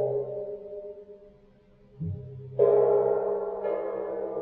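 Chau gong struck with a superball mallet at different spots on its face: it rings from a strike at the start, then two more strikes about two seconds in bring out first a deeper tone and then a louder, brighter one. Each spot sets off a different ringing sound of several steady tones, showing the gong has at least three distinct sounds.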